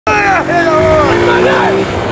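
A small motor scooter's engine running as it rides, its steady hum rising slightly, with a man's loud, excited voice calling out over it.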